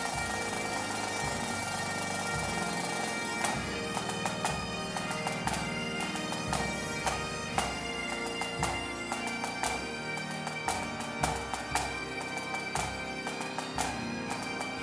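Great Highland bagpipes playing a tune over their steady drones. About three and a half seconds in, sharp pipe-band drum strokes join in and keep going.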